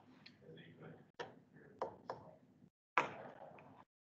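A few faint, sharp clicks spaced about a second apart, the loudest about three seconds in, with a faint low voice murmuring between them.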